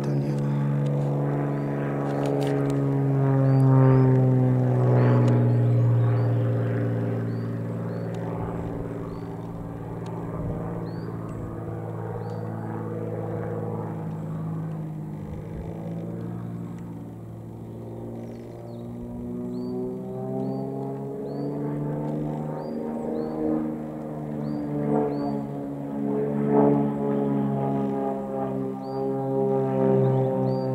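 Aerobatic XtremeAir XA42's six-cylinder Lycoming engine and propeller droning through its display manoeuvres, the pitch rising and falling as power and distance change. It is loudest a few seconds in, fades in the middle, and swells again toward the end.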